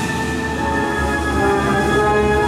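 Orchestral music with long held chords over a low bass.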